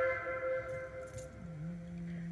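A long held wind-instrument note, horn-like with many overtones, fading away; about halfway through, a low steady note comes in and holds.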